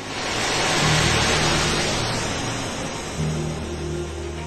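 Roar of a missile launch: a loud rushing noise that starts suddenly and slowly fades, over background music with a low bass line.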